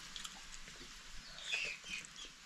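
Faint, short, high-pitched animal calls about one and a half seconds in, over small soft clicks.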